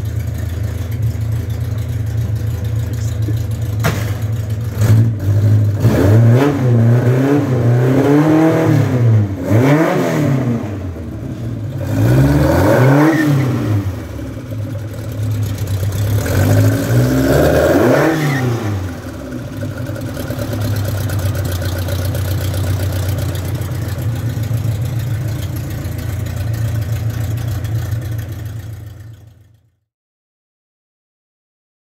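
Datsun 1200 race car's four-cylinder engine idling, then revved in several throttle blips, each a quick rise and fall in pitch, before settling back to a steady idle. The sound cuts off suddenly near the end.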